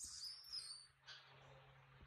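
Baby macaque giving a thin, high-pitched squeal whose pitch dips and rises, then a shorter high cry about a second later, over a faint steady low hum.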